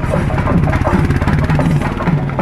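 Temple procession drums playing a fast, dense roll, the strokes running together.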